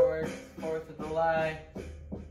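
A man singing held, wavering notes in short phrases over a steady low bass tone, the voice loudest at the start and fading toward the end.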